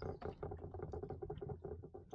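Quick, irregular light taps and knocks of a muskie being handled and settled on a plastic fish-measuring board, over a low steady rumble.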